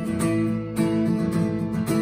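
Taylor acoustic guitar strummed in a steady rhythm, chords ringing between the strokes.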